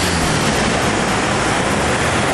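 Road traffic on a multi-lane city street: minibuses and cars driving past, a steady wash of tyre and engine noise.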